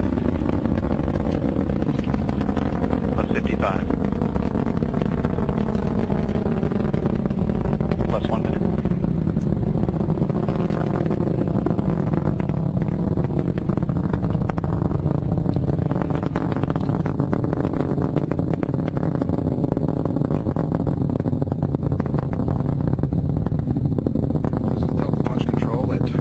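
Engine noise of the Delta IV Heavy's three RS-68 rocket engines climbing after liftoff: a steady, dense rumble, with faint tones sliding down in pitch over the first several seconds.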